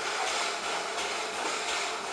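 Steam hissing steadily from the rebuilt Merchant Navy Class 4-6-2 Clan Line as it stands with its train, the noise swelling slightly and regularly.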